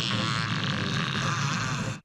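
Cartoon monster sound effect: a drawn-out growling roar from an animated crystal beast, cutting off suddenly at the end.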